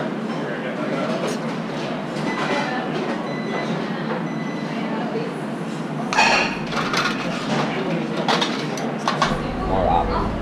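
Steady din of a busy commercial kitchen during service, with faint voices in the background. About six seconds in come several sharp clinks of china and metal utensils.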